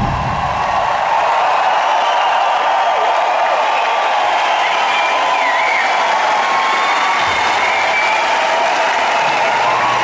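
Large arena crowd cheering, clapping and whistling steadily as the rock band's final note cuts off at the very start.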